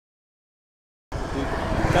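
Silence for about the first second, then roadside traffic noise cuts in suddenly: a steady low rumble of passing cars, with voices starting near the end.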